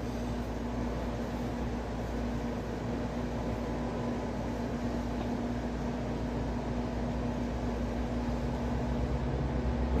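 Steady hiss of light rain and wet-road traffic with a constant low mechanical hum underneath; a car approaches on the wet road near the end, bringing a rising rumble.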